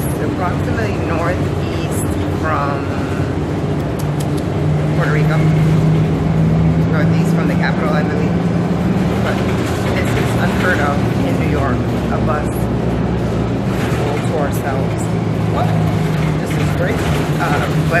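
City bus engine running with a steady low drone, heard from inside the passenger cabin while the bus is under way; the drone grows louder about five seconds in.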